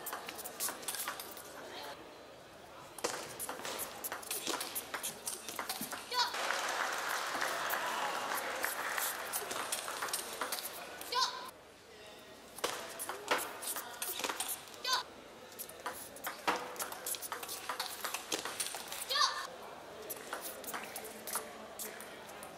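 Table tennis rallies: a celluloid ball clicking back and forth off the bats and table, with audience applause and cheering between points and a few short shouts.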